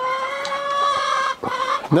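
A chicken giving one long, drawn-out call of about a second and a half, held nearly level in pitch, then a brief, softer call.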